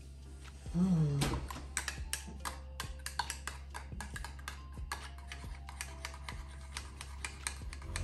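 Metal spoon stirring in a ceramic mug, clinking against the sides in many quick, uneven ticks, over faint background music.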